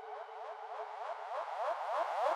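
Quiet build-up in an electronic dubstep/hardstyle track: a rapid stream of short rising synth sweeps, about ten a second, growing louder toward the end.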